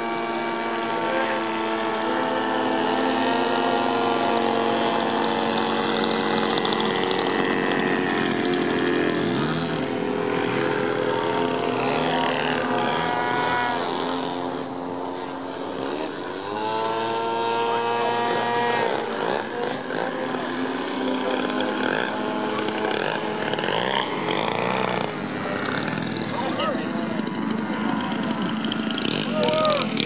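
Engine and propeller of an RC aerobatic airplane in flight, running continuously with the pitch sliding up and down repeatedly as the throttle changes and the plane passes. It eases a little about halfway through, then rises again.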